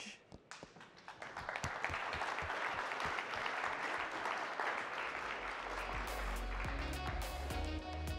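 Audience applause that builds about a second in and holds steady, with music carrying a steady bass beat coming in under it about five seconds in.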